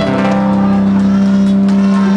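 Live band music holding one long, steady chord, with no singing over it.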